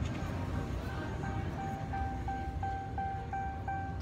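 Dodge Charger's door-open warning chime beeping repeatedly at a steady pitch, about three beeps a second, starting about a second in. It sounds because the car's power is on while the driver's door stands open.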